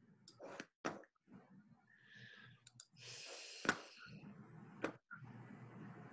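Faint, scattered clicks of someone working a computer during a video call, with brief rustling in between; the sharpest clicks come about a second in and just after the middle.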